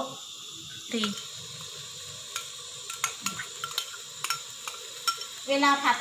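Chili paste sizzling in a little oil in a non-stick frying pan, with a metal spatula clicking and scraping against the pan several times.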